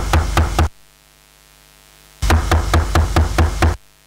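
Two bursts of quick knocks, each with a deep thud, heard through a PA system. The first stops about half a second in and the second comes near the middle and lasts about a second and a half: a microphone being tapped to test it.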